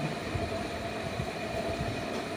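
Pen scratching on notebook paper as a handwritten word is written, with a few faint soft taps, over a steady background hum.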